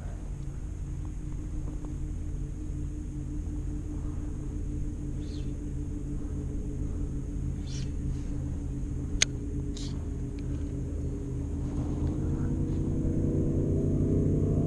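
A boat motor humming steadily, rising in pitch and getting louder over the last couple of seconds. A single sharp click about nine seconds in.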